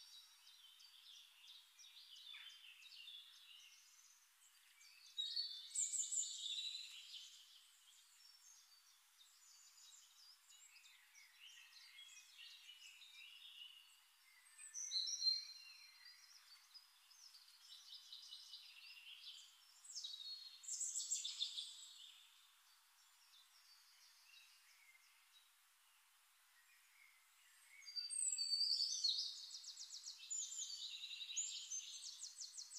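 Birds chirping faintly in the background: clusters of quick, high chirps and twitters that come in bursts every several seconds, with quieter stretches between.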